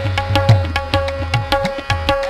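Instrumental music with tabla playing a steady beat of about four strokes a second, its deep bass strokes bending in pitch, over a held melodic note.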